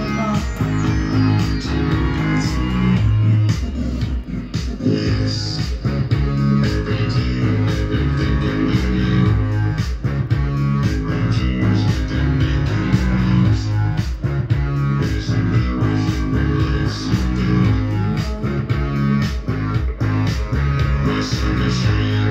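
Rock music with electric guitar and bass, played from a vinyl record on a Pioneer CEC BD-2000 belt-drive turntable.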